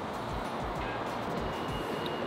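Steady rushing rumble of an electric skateboard's wheels rolling over the street, under background music with a soft low beat.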